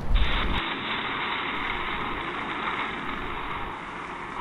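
Steady, even rushing hiss of heavy rain, with a low rumble that stops about half a second in.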